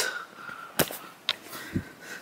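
A few short, soft knocks and clicks from a handheld camera being turned around and carried.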